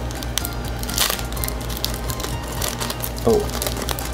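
Foil trading-card booster pack wrapper crinkling in the hands as it is torn open, in short crackles, over steady background music.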